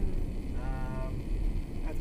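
Steady road and engine noise inside the cab of a moving camper van, with a brief steady pitched hum about half a second in.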